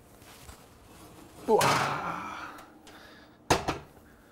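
Hot cast-iron pot being taken out of a kitchen oven: two sharp knocks near the end, heavy metal knocking against the stovetop and oven door.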